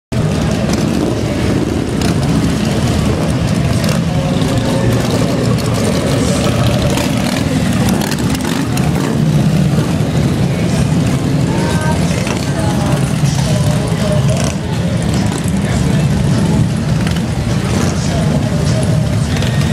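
Steady low rumble of big touring and cruiser motorcycles riding slowly past in street traffic, mixed with the chatter of a large crowd.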